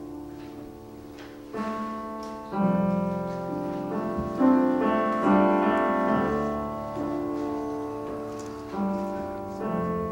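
Solo piano playing a slow passage of chords between sung phrases, each chord struck about every second or two and left to ring and fade.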